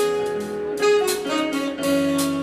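Jazz band playing live: saxophone, piano, electric guitar and drum kit, with held notes that change about every half second and light cymbal strikes.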